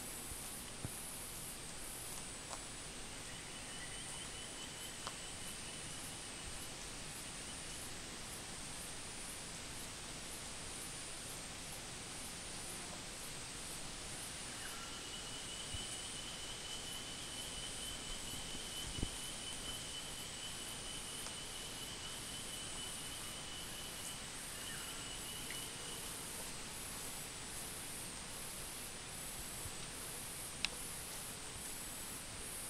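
Steady outdoor background hiss with a thin, high, steady insect-like drone that comes in a few seconds in, fades, and returns for about ten seconds in the middle, with a few faint clicks.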